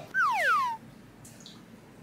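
A short descending whistle-like sound effect: two falling tones slide down together over about half a second near the start, then it goes quiet.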